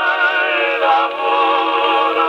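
1915 Columbia Graphonola wind-up phonograph playing a 78 rpm record through its acoustic reproducer: singing with vibrato, thin and narrow in tone with no bass.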